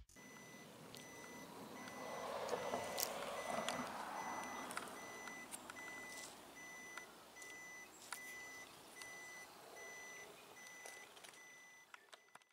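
Faint electronic beeping at one steady pitch, repeating evenly about one and a half times a second, over a low wash of background noise with a few scattered clicks.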